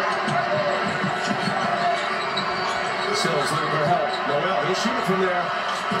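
Steady arena crowd noise during live college basketball play, with the basketball dribbling on the hardwood court and scattered voices. A few short sharp sounds come past the middle and near the end.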